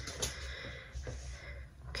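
Faint rustling and a few light ticks of objects being handled and set down on a desk, over a low steady room hum.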